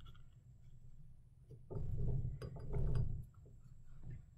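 Thin paper napkin rustling and crinkling under the hands as it is folded over the glued bottom of a glass jar, in one stretch of a second and a half in the middle.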